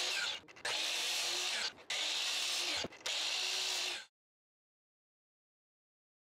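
Miter saw cutting into a pine 4x4 in several short passes to clear a bevelled notch to a set depth. The cutting comes in four short pieces with brief breaks between them, then stops about four seconds in.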